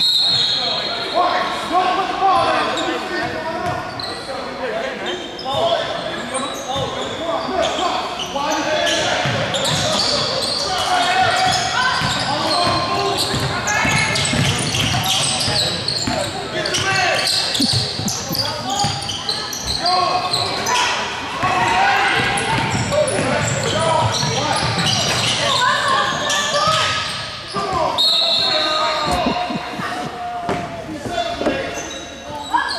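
Basketball game in a gymnasium: a ball bouncing on the hardwood floor among players' and spectators' voices, all echoing in the large hall. A short shrill referee's whistle sounds at the very start and again near the end.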